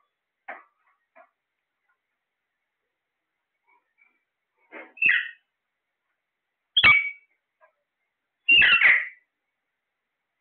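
Caged Alexandrine and rose-ringed parakeets calling. Two faint short chirps come in the first second or so, then a pause. In the second half come three loud, harsh squawks about two seconds apart, and the last is the longest.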